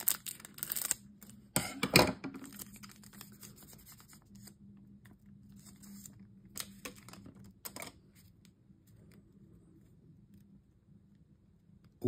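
Foil booster-pack wrapper crinkling as it is pulled open, loudest in the first two seconds. Then the trading cards are slid out and flipped through, with faint clicks and rustles of card against card.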